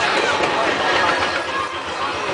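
Small Severn Lamb park passenger train running along its track, heard from an open carriage, with people's voices mixed in.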